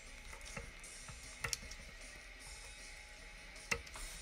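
Faint background music in a quiet room, with two short soft clicks, about a second and a half in and near the end, from thread being started on a hook in a fly-tying vise.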